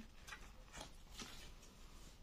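Faint rustling and a few light ticks of a paper perfume sample card being handled.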